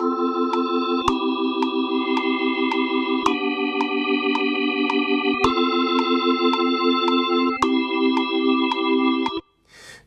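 GarageBand's Hammond organ emulation playing back a recorded chord part, quantised to eighth notes. The sustained chords change about every two seconds, with a short click on each repeated stroke about twice a second. It is quite loud, and it stops suddenly about nine seconds in.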